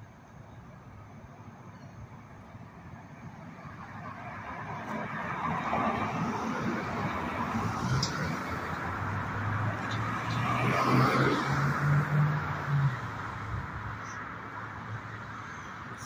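Cars passing close by on the road: tyre and engine noise builds from about four seconds in, peaks twice around the middle with a low engine hum under the second pass, and eases off near the end.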